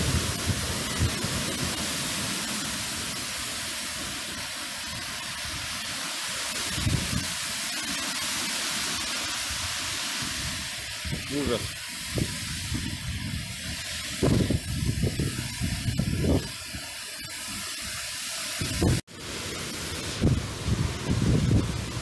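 Cyclone wind and rain: a steady hiss of wind-driven rain and wind, with gusts buffeting the microphone in low surges from about halfway through. The audio drops out abruptly for a moment near the end.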